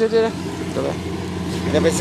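A steady low engine hum, like a motor idling, running under a man's voice that speaks briefly at the start and again near the end.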